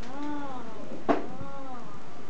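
A child's voice making two long, drawn-out calls that rise and fall in pitch, close to meows, with a sharp click between them about a second in.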